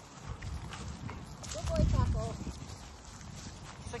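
Dogs playing rough on dry leaves, with scuffling and rustling of paws, and a short voice-like sound about halfway through.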